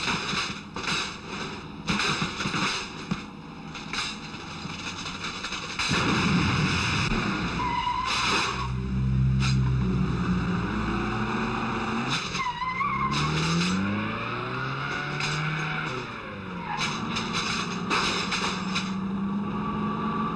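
Car-chase sound effects: a run of crashes and knocks in the first few seconds, then vehicle engines revving up and down with tyres squealing about eight and twelve seconds in.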